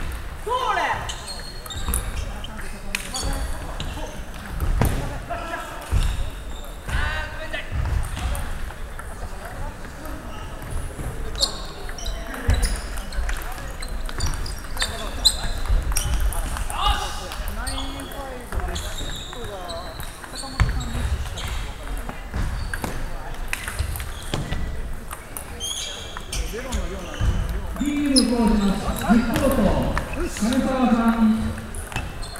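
Table tennis ball clicking off the paddles and the table in a rally, the hits ringing slightly in a large hall. People's voices are heard in the background, loudest near the end.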